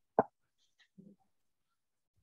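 A single short, sharp pop about a fifth of a second in, followed about a second later by a faint brief low sound.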